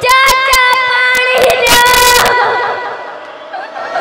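A group of young girls' voices crying out together in lament on a long, high, held note that fades near the end. A rapid run of sharp knocks or claps sounds over it in the first two seconds.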